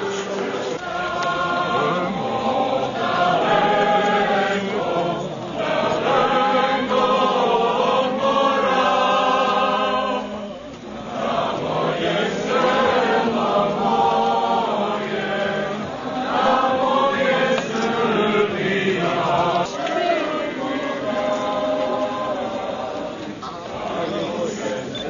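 A group of voices singing together, a slow choir-like song in long phrases, with a short break about ten and a half seconds in.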